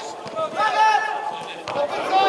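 Players' voices calling and shouting on an indoor football pitch during play, with a single sharp knock near the end.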